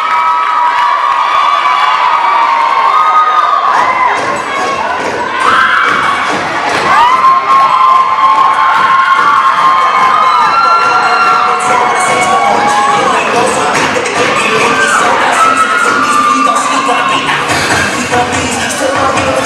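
A crowd of teenagers screaming and cheering, with many high, drawn-out shrieks. Dance music comes in underneath about four seconds in, mostly buried by the cheering.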